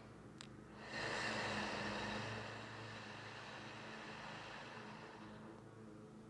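A woman's long, soft exhale through the mouth that begins about a second in and fades away over some four seconds, after a small click. A low steady hum runs underneath.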